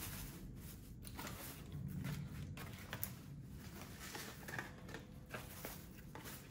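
Faint patter and rustle of water-retaining polymer granules (Soil Moist) pouring from a plastic jug onto potting soil, with scattered small clicks.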